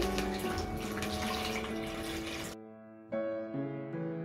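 Water poured from a cup into a zip-top plastic bag, a steady splashing pour that cuts off suddenly about two and a half seconds in, over light background music.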